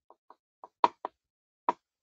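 Stylus tip tapping on a tablet's glass screen while handwriting: a run of short, irregular clicks, the loudest about a second in and near the end.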